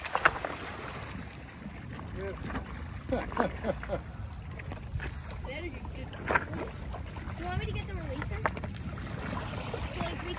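Shallow water splashing and sloshing over cobbles as a soupfin shark is worked in at the water's edge, with a few sharp splashes and knocks. Wind rumbles on the microphone and voices talk faintly.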